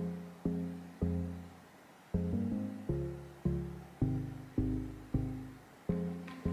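Background music of slow plucked notes, each struck and fading away, about two a second.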